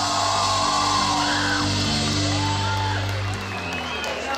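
Live band music with a man singing long, sliding notes; the low bass stops a little before the end.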